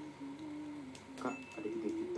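A woman humming through closed lips while eating, holding a few low notes and then sliding up and down near the end. A few sharp crinkles of a foil snack wrapper are handled at her mouth.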